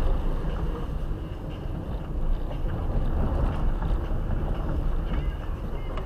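Car cabin noise while driving slowly over a rough, potholed road: a steady low rumble of tyres and engine.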